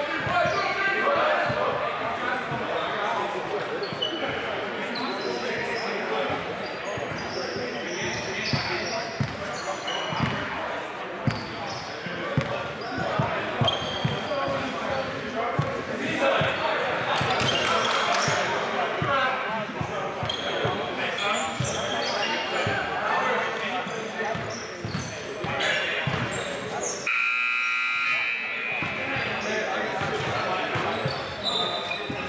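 Indistinct talking of players and officials in a gymnasium, with a basketball bouncing on the hardwood floor again and again, the sounds echoing in the hall.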